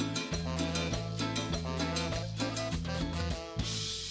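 A live cumbia band plays an instrumental passage: bass, drum kit and hand percussion keep a steady dance beat under melodic horn lines. Near the end a crash washes over the music while the bass drops out for a moment, leading into the next sung verse.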